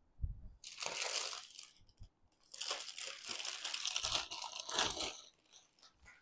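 Clear plastic saree packaging crinkling and rustling as the bagged sarees are handled, in two stretches: about a second long, then nearly three seconds, with a low thump just before the first.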